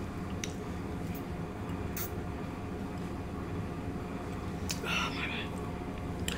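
Quiet sipping of a drink through a plastic straw and swallowing over a steady low room hum, with a short breathy sound about five seconds in.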